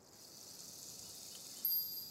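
High shimmering hiss fading in, then a chime struck sharply a little past one and a half seconds in, the loudest moment, ringing on in clear high tones.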